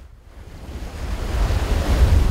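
A rushing noise with a deep rumble, swelling steadily louder over about two seconds.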